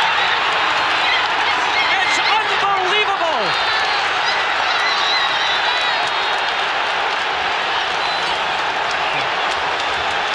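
Football stadium crowd: a steady, dense roar of cheering and shouting from the stands, with a couple of pitched whistles or calls sliding down in pitch in the first few seconds.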